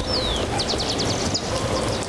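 Wild bird calls over steady outdoor background noise: a short falling whistle just after the start, then a rapid run of about ten sharp, high notes.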